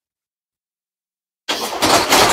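Dead silence, broken about a second and a half in by a sudden loud rustling handling noise as the saris are moved.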